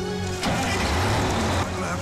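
A bus engine runs up loudly for about a second, over steady dramatic background music.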